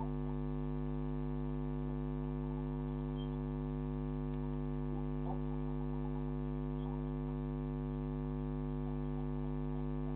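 Steady electrical mains hum in a security camera's audio: a low buzz made of several steady tones, unchanging throughout, with a few faint short chirps scattered over it.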